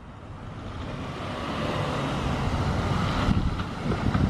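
A Kia Rio sedan drives toward the microphone across a parking lot: engine and tyre noise grow steadily louder as it approaches.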